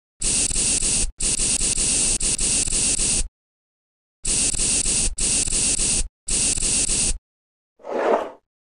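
Aerosol spray can hissing in five sprays that start and stop abruptly: two in the first half, the second the longest at about two seconds, then three shorter ones of about a second each after a one-second pause.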